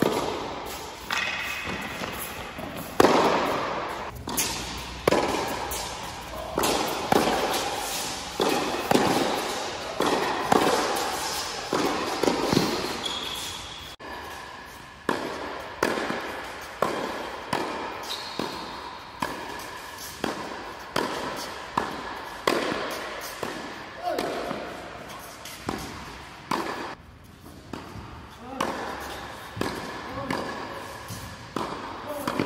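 Tennis balls struck by rackets and bouncing on the court in a rapid rally, a sharp hit about every second, each ringing in the echo of a large indoor hall.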